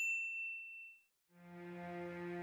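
A single bright ding that rings and fades away within about a second. After a brief silence, soft music fades in on a held chord.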